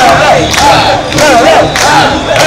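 Mikoshi bearers chanting in unison as they carry the portable shrine, a loud group chant on a steady beat of about two shouts a second.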